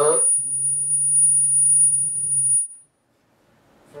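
A man's voice holding a long, level 'uhhh' of hesitation at one low pitch for about two seconds, then stopping.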